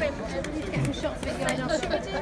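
Several people talking at once in a gathered crowd: overlapping chatter, with no one voice standing out.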